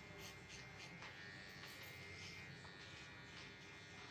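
Faint steady buzz of an electric hair trimmer running as its blade edges the hairline at the back of the neck.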